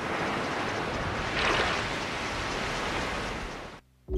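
Surf on a beach: waves washing in as a steady rush, one swelling about a second and a half in, then fading out just before the end.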